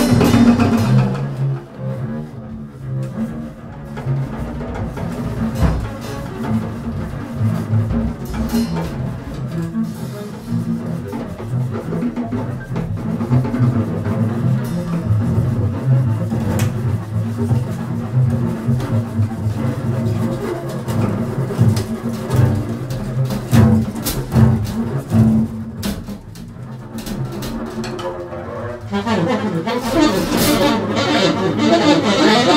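Free-improvised double bass and drums: sustained low bowed notes on an upright double bass, with cymbals scraped and struck by hand and scattered sharp percussive hits.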